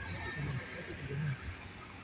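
Faint, steady low rumble of a vehicle driving, heard from inside its cabin.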